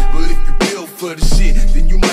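Hip hop track with rapping over very deep, boosted sub-bass notes: one bass note at the start, then another from just past a second in.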